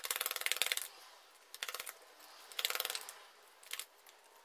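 Tarot cards being handled and laid out on a cloth-covered table: four short bursts of rapid papery clicking as cards are flicked off the deck and set down. The longest burst is at the start.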